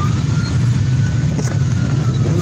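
Motorcycle engines of a large pack running together in slow traffic: a steady low drone, with a faint high tone slowly falling in pitch over it.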